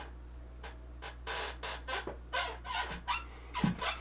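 Faint scattered short clicks and brief squeaks over a steady low hum.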